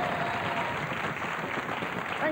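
Studio audience applauding steadily, with the last held note of the programme's theme music dying away in the first half-second.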